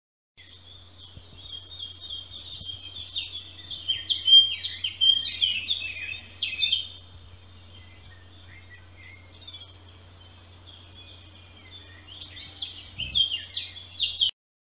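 A songbird singing a long run of quick, varied high notes, then a pause and another burst near the end, over a low steady hum.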